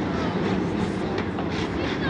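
A field of dirt-track street stock cars' V8 engines running together at pace speed, a dense steady rumble with single engines revving up and down within it.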